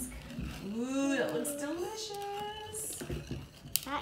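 A voice drawn out in a wordless, sing-song call that glides up and down for a couple of seconds, with a sharp click near the end, likely the metal whisk knocking against the mixing bowl.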